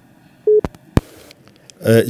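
Telephone line sounds: one short beep about half a second in, then two sharp clicks, as a phone-in call is hung up and disconnected.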